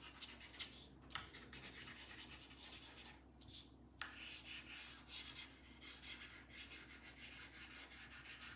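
Chalk pastel rubbed back and forth across paper in quick scratchy strokes as the sky is colored in, with a short pause a bit past three seconds in.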